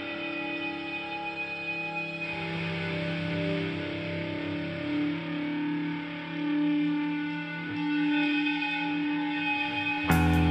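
Rock music: an electric guitar played through effects with echo, holding long sustained notes. A louder full-band section comes in at the very end.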